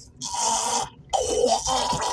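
A man making two drawn-out, rasping gagging noises in mock disgust, one after the other.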